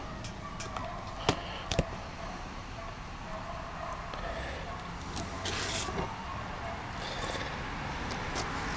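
A small pocket knife working at a plastic-wrapped cardboard box: two sharp clicks a little over a second in, then a brief scratchy scrape of the blade on the wrapping past the middle. A rising rush of passing traffic comes up near the end.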